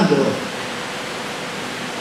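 Steady, even hiss of background noise with a faint steady hum, after the last spoken word trails off at the start.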